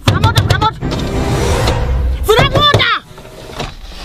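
A car's electric window motor whirring steadily as the glass slides up, stopping sharply about three seconds in, with raised women's voices over it.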